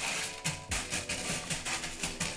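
Expanded clay pebbles (LECA) rattling and clicking as they are pushed around by hand in a glass tank, over soft background music with held tones.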